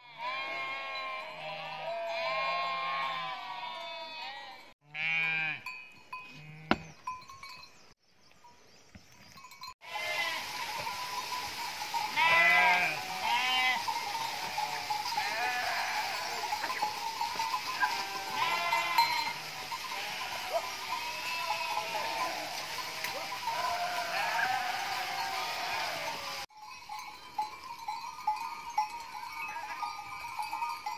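A flock of sheep and goats bleating, many calls overlapping, in several short stretches broken by abrupt cuts.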